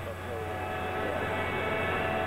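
Steady mechanical hum made up of several held tones, with no change in level.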